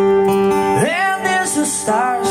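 Acoustic guitar playing held chords live; just under a second in, a man's singing voice comes in, sliding up into the first note of a line.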